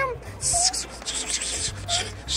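Scratchy rubbing and rustling in short repeated strokes, starting about half a second in: plush toy fabric brushing against itself and against clothing.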